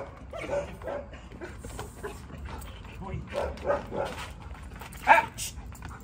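A dog barking in short separate barks during protection training: two soft barks in the first second, a quick run of four about three to four seconds in, and a louder bark near five seconds.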